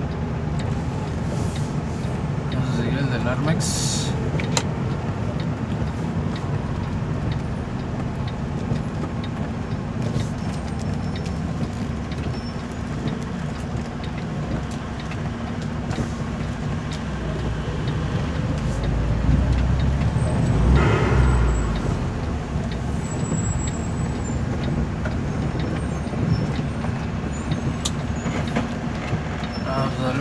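Vehicle engine running with road noise, heard from inside the cab while driving slowly on a wet road. A louder low rumble swells up and fades from about 19 to 22 seconds in.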